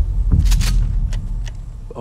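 Trailer sound design: a deep boom hit at the start that trails into a heavy low rumble, with a few sharp clicks or whooshes about half a second and a second and a half in.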